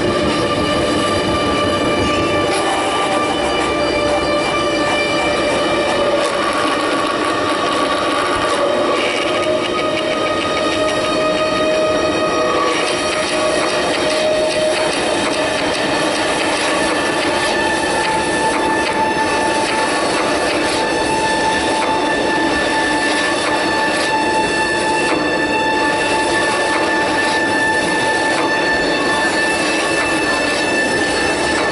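Electronic score: a loud, dense grinding drone layered with several held high tones that shift in pitch now and then, a new tone taking over a little past halfway.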